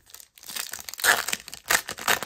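Foil trading-card pack wrapper crinkling and tearing as hands pull it open and off the cards, in a run of irregular crackles that start about half a second in, loudest around one second and again near the end.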